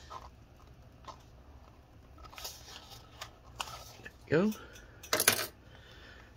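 Cardboard box being pried open with a flat tool: scattered small scrapes and clicks, then a loud, brief cardboard scrape about five seconds in as the stiff tab comes free.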